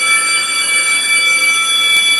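Cartoon school bell sound effect: a loud, steady electric bell ringing, signalling the end of recess.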